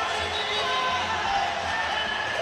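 Arena music playing over steady crowd noise in an ice hockey rink.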